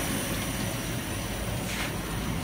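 Steady whir of the laser cutter's fume extraction vent and air assist running, with a faint high whine over it and a brief hiss a little before the end.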